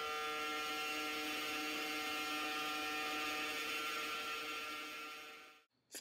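A steady droning hum of several held tones over a hiss, fading out near the end.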